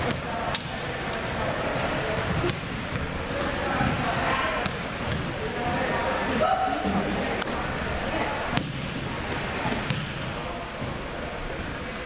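A basketball bouncing on a hardwood gym floor, a handful of sharp, separate bounces, as a player dribbles at the free-throw line. Voices murmur in the hall underneath.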